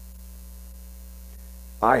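Steady low electrical mains hum with a faint row of higher steady tones above it; a man's voice cuts in just before the end.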